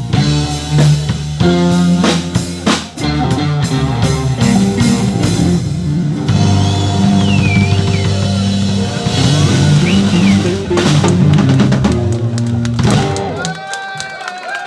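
Live blues band playing the instrumental close of a song: drum kit, electric guitars and bass. The band stops shortly before the end and crowd voices take over.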